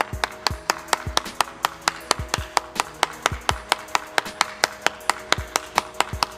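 One person clapping steadily, about four claps a second, over background music with held chords and a low beat.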